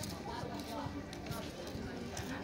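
Faint voices of people talking in the background over steady outdoor ambience.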